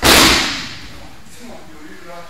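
A person landing on tatami mats in a breakfall after an aikido throw: one sharp, loud slap on the mat at the start, dying away over about half a second.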